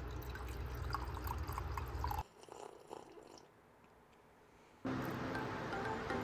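Hot water poured from an electric kettle into a mug, with small splashes, for about two seconds; it cuts off suddenly into near silence, and a steady low hum comes in near the end.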